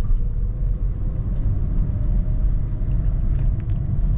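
Interior sound of a Honda Brio being driven slowly: a steady low rumble of engine and road noise, with a faint engine hum above it.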